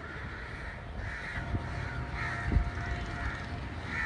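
Crows cawing, several separate calls about a second apart, over a low background rumble, with a short thump midway.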